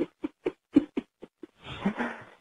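A man giggling: a quick run of short, breathy laughs, about four a second, then a softer breathy sound near the end.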